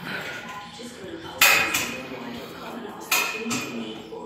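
Two sharp metallic clanks of gym weights, the first about a second and a half in and the second near the end, each ringing briefly.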